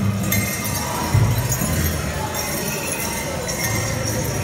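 Bells on dancers' regalia jingling lightly as they shift about, with a low thump about a second in.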